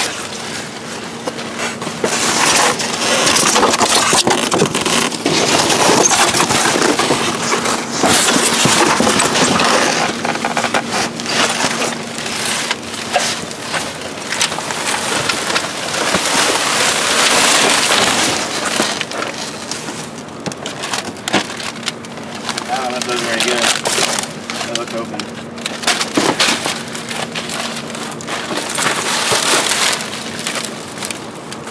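Plastic garbage bags and cardboard boxes rustling and crinkling as hands dig through a dumpster, with packaged items and bottles knocking together. A steady low hum runs underneath.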